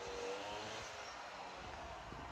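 Quiet outdoor background: a faint steady hiss with a faint hum that dips slightly in pitch in the first second.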